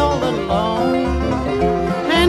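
Bluegrass string band playing an instrumental stretch: five-string banjo picking over guitar and mandolin.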